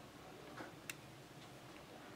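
Faint, light clicks of steel tweezers touching parts inside an opened smartphone: four small ticks spread over about a second, the second one the sharpest.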